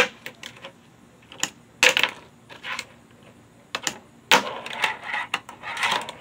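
Tech Deck fingerboard clacking on a wooden tabletop: a run of sharp, irregular clicks and knocks as the board is popped and landed, with a denser stretch of rolling and scraping about four to five seconds in.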